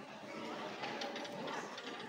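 Indistinct voices of people talking in the background, with a few faint clicks.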